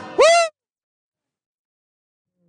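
A single sung note that slides upward in pitch, cut off sharply about half a second in; after it the sound drops out completely and there is dead silence.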